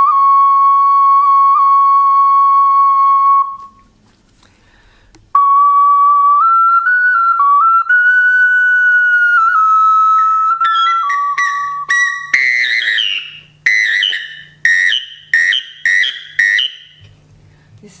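Svistulka, a Russian clay whistle, played: one long steady note, then after a short pause a slow tune stepping between a few notes. About twelve seconds in it breaks into a run of short, warbling chirps pitched higher.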